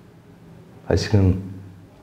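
A man's voice in a studio, speaking a short phrase about a second in after a brief pause.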